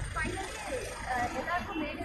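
Speech: people talking in conversation, over a steady low background rumble.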